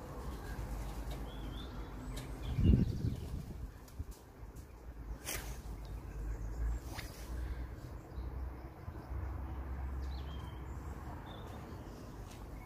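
Faint, short bird chirps over a steady low outdoor rumble. A single loud low thump comes between two and three seconds in, and two sharp clicks follow at about five and seven seconds.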